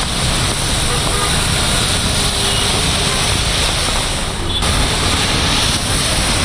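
Road traffic moving through heavy rain on wet roads: a steady wash of tyre and engine noise.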